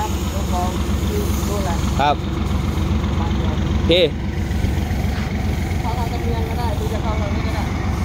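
Heavy diesel engine idling steadily.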